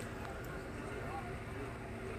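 Indistinct distant voices over a steady low rumble, with a faint click or two.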